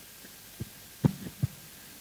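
A few short low thumps of a handheld microphone being handled, about half a second, one second and a second and a half in, over a faint steady hiss.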